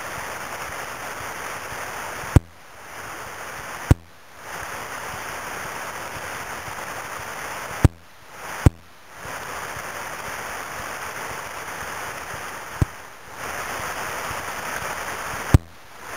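River rapids rushing steadily. Six sharp clicks break in, each followed by a brief drop in the water sound of about half a second.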